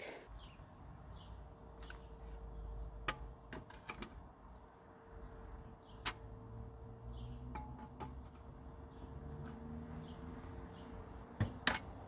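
Scattered light clicks and knocks of handling, ending in two sharper knocks near the end as an aluminium spirit level is set down on hollow concrete blocks. A faint steady hum runs underneath.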